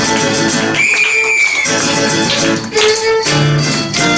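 Live violin and acoustic guitar duo playing: the violin carries the melody over strummed guitar chords. About a second in, the violin holds one long high note while the guitar briefly stops.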